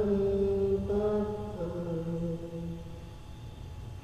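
A man's voice chanting Qur'anic recitation in long, drawn-out notes, stepping down in pitch partway through and trailing off about three seconds in.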